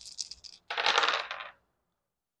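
Astrology dice rattling in cupped hands, then thrown and clattering onto a wooden table for about a second before stopping suddenly.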